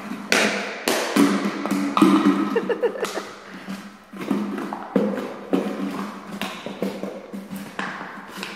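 Empty plastic bottle being pushed, bitten and batted across a concrete floor by a small dog: irregular taps, crackles and clatters of thin plastic, several of them sharp and loud.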